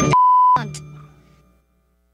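A censor bleep, a steady single-pitched beep lasting under half a second, covers a word at the end of a sung theme song. The song's last low note then rings on and fades out to silence about a second and a half in.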